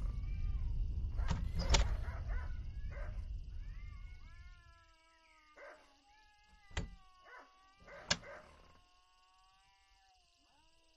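Wooden casement windows swung shut and latched, with sharp knocks in the first two seconds, over a low wind rumble that dies away. Then come long, slowly falling wailing tones, with two more sharp clicks near the end.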